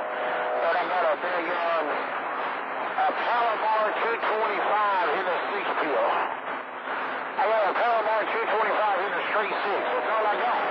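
Men's voices talking over a CB radio receiving distant skip on channel 28, heard through a narrow, noisy radio channel. The talk runs on with short breaks, and a steady whistle sounds briefly near the start.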